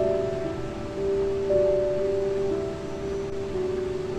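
Slow, soft relaxing piano music, held notes changing about once a second, over a steady background hiss like flowing water.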